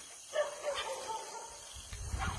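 Animal calls: a sudden loud pitched cry about a third of a second in, followed by a higher, drawn-out note, over a faint steady hiss.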